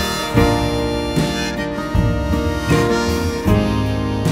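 Instrumental break in a song: a harmonica melody held over strummed acoustic guitar, with a strum about every second.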